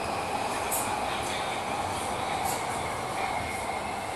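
Running noise inside a moving Purple Line metro train car: a steady rumble with a faint high whine. Two brief light rattles come about a second in and again midway.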